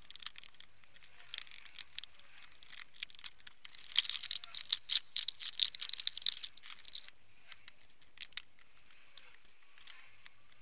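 Small stiff brush scrubbing metal oil can parts in a plastic tub of degreaser: a busy scratching, densest from about four to seven seconds in, with scattered clicks and taps of the parts against the tub.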